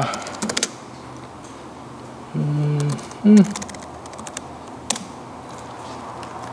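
Computer keyboard being typed on, short scattered clusters of key clicks: a few near the start, more around three seconds in, and a single one near five seconds.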